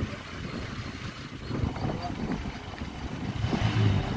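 Engine and road noise from a moving vehicle, heard from its open side window with wind on the microphone; a low engine hum grows louder near the end.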